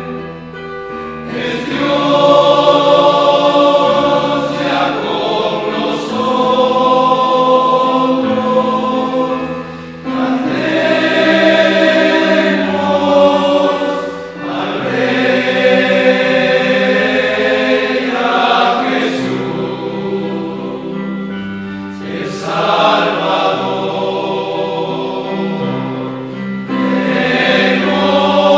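A choir singing a slow hymn in long held chords, phrase by phrase, with short breaks for breath between phrases.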